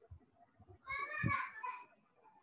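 A faint, high-pitched voice in the background for about a second, midway through, in otherwise quiet room tone.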